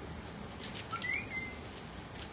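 Thin Bible pages being leafed through, with faint scattered clicks and rustles. About a second in there is a short high chirp, then a brief whistle that rises and then holds level.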